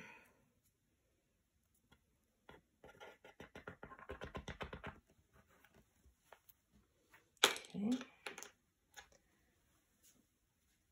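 Small plastic clicks and taps from handling a tube of super glue, a quick run of them lasting a couple of seconds, with a few scattered ticks after. Near the end a short, louder burst of handling noise comes together with a brief voice sound.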